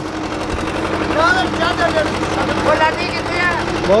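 HMT 2511 two-cylinder diesel tractor engine running steadily with an even chugging pulse, under load as it pulls a fully loaded sugarcane trolley whose wheels are driven through the PTO shaft. People's voices call out over it twice.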